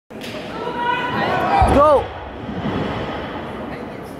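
Voices echoing in a large gym hall, loudest in the first two seconds, with a low thud about one and a half seconds in, then a steady hall murmur.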